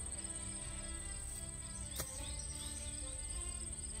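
A single sharp click about two seconds in: an iron striking a golf ball on a short shot from rough grass.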